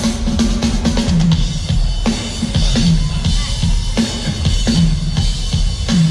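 Live funk band playing loud through a large outdoor PA, heard from within the crowd: a drum-heavy groove with a repeating bass line.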